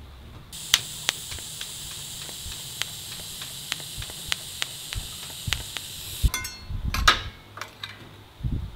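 DC TIG welding arc from an ArcCaptain TIG 200P on thin stainless steel at about 150 amps: a steady high hiss with scattered sharp crackles. The arc starts about half a second in and stops about six seconds in, and a few knocks follow.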